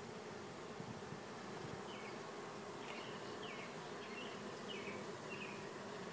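Steady low hum of a honeybee colony buzzing in an open hive. A few faint, short, high chirps come over it in the second half.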